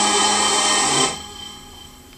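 A held final chord of layered female singing that stops abruptly about a second in, leaving only faint room sound.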